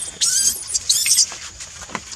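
Baby monkey screaming in two shrill, high-pitched cries, one just after the start and one about a second in.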